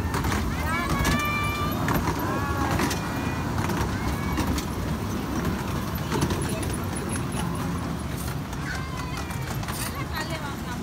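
Miniature park train running along its track with a steady low rumble, while children aboard call out with a few long, held shouts in the first few seconds.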